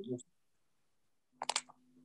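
A quick cluster of sharp clicks about one and a half seconds in, followed by a faint low steady hum, as a participant's audio line comes back on a video call with a poor connection.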